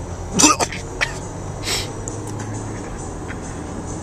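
A cough or throat clearing about half a second in, then a short breathy hiss, over the steady low rumble of a car cabin in traffic.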